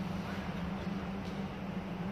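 Room tone: a steady low hum under faint background noise, with no distinct knocks or footsteps standing out.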